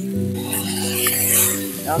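Stuffed pork loin sizzling in an electric skillet while it browns, the hiss swelling for about a second in the middle. Background music with steady held notes plays underneath.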